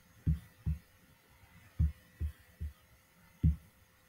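Six soft, low knocks at irregular spacing over about three seconds, with a faint steady hum underneath.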